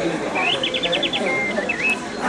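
Murmur of a crowd of people talking in a room. Over it comes a high chirping: a quick run of about six chirps, then a short held note and a dip-and-rise whistle.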